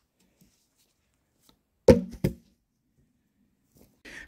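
Two sharp wooden knocks about a third of a second apart, the first the louder, from a log pole being handled on a bushcraft shelter frame.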